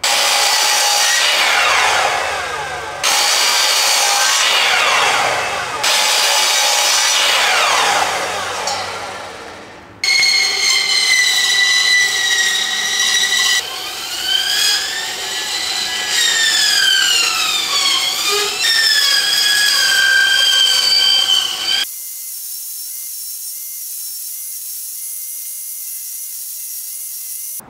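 A run of shop power tools cutting wood, joined by hard edits. First a miter saw makes three cuts in about ten seconds, its pitch falling as the blade winds down after each. Then a bandsaw runs with a steady whine that bends up and down in pitch as the wood is fed, and near the end a quieter steady hiss sets in, most likely an orbital sander.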